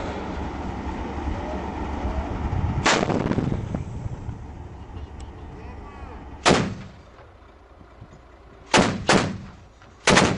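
Heavy gunfire over a steady low vehicle rumble. One shot comes about three seconds in and a louder one at about six and a half seconds, then two shots a third of a second apart near the end, each ringing off briefly.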